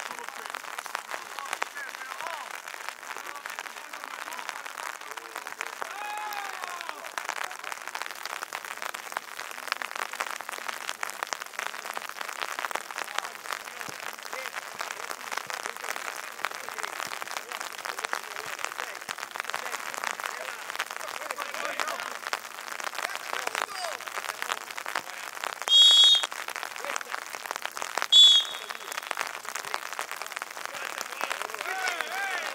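Outdoor football training ambience: players calling out indistinctly over a steady crackling patter, with ball contacts. Near the end a coach's whistle gives two short, shrill blasts a couple of seconds apart, the first a little longer, much louder than everything else.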